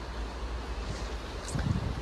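Wind buffeting the microphone on the open deck of a cruise ship at sea: a steady low rumble over an even rush of wind and water.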